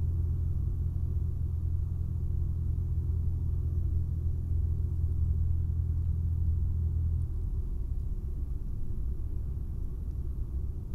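The four-cylinder Lycoming engine and propeller of a Cessna 172SP in flight, heard inside the cockpit as a steady low drone. About seven seconds in, the steady note breaks up and eases slightly.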